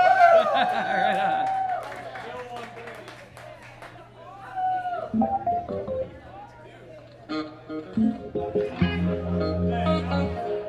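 Electric guitar and bass guitar noodled on in the pause before the next song, scattered short notes and clicks over room chatter, with a steady low bass note coming in near the end.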